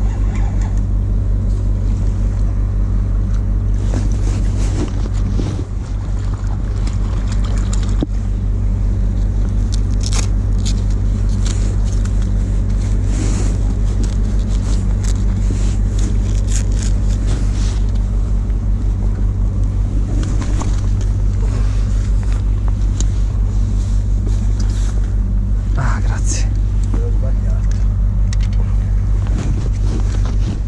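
A large ferry's engines running, a steady deep hum, with short clicks and rustles of fishing tackle and clothing over it.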